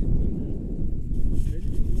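Wind buffeting an open-air camera microphone: a heavy, steady low rumble, with faint voices in the background.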